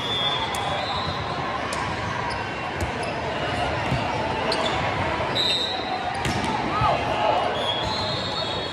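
Echoing din of a big hall full of volleyball games: many voices talking and calling out at once, scattered sharp smacks of volleyballs being hit or bouncing, and a few short, high squeaks of sneakers on the sport-court floor.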